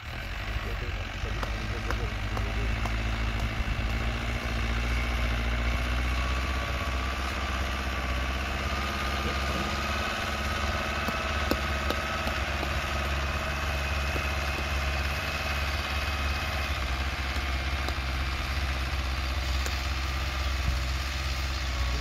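Mahindra Arjun Novo tractor's diesel engine running steadily under load as it pulls a tillage implement through the soil. It grows louder over the first few seconds and then holds even, with a faint high whine coming and going in the middle.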